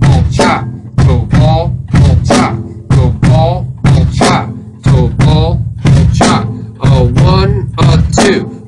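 Drum kit playing a repeating toe-ball shuffle groove about once a second: a pair of quick bass-drum strokes, toe then ball of the foot, answered by a snare-drum "chop".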